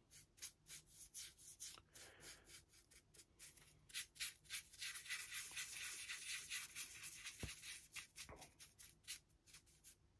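Faint, quick scratchy strokes of a flat paintbrush scrubbing grey paint loosely onto a 3D-printed plastic model base, a rapid run of brushstrokes that is thickest in the middle.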